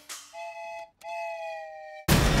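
Small toy train whistle sounding two toots, a short one and then a longer one that sags slightly in pitch.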